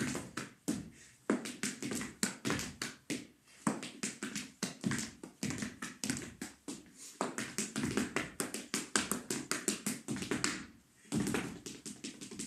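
Percussive dance footwork: dress shoes stamping, stepping and tapping on a wooden floor, mixed with hand claps and hand slaps on the body and heel, in a fast, uneven rhythm of several strikes a second. There is a short break about eleven seconds in before the strikes resume.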